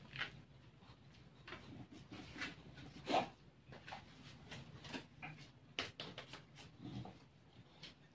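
Cheese being grated on a small flat metal hand grater: a series of short, irregular scrapes, the loudest about three seconds in.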